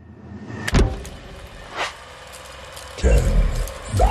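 Intro sound effects for an animated clapperboard and film countdown. A sharp clack comes about three-quarters of a second in and a fainter click near two seconds, over a steady crackly hiss; a loud low rumble sets in at about three seconds.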